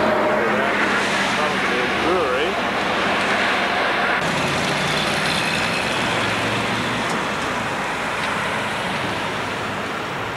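Street traffic: a steady wash of passing car noise, with faint voices in the first couple of seconds. The sound changes abruptly about four seconds in.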